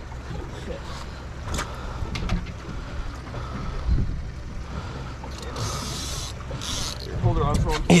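Boat engine idling with a steady low rumble, a few knocks and two short rushes of noise partway through, and a brief voice near the end.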